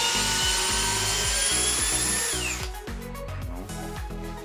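Villager VPL 8120 cordless drill's brushless motor running at high speed, its whine creeping slightly upward, then winding down and stopping about two and a half seconds in. Background music plays underneath.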